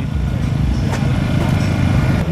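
Turbocharged Mitsubishi 3000GT VR-4 V6 idling steadily, the sound low-pitched and even.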